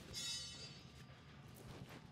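A brief rustle of a cotton T-shirt being pulled off over the head, near the start, over faint background music.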